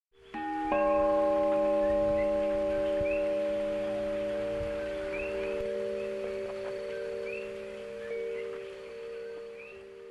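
Bell-like tones struck twice in quick succession just after the start, ringing on together as a chord and slowly fading away.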